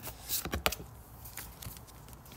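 Oracle cards being handled as one is picked from the deck: a few light snaps and taps, the sharpest just under a second in, then softer ticks.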